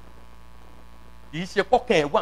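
Steady electrical mains hum from the church's amplified sound system in a pause between phrases, then a man's voice over the loudspeakers resumes about a second and a half in.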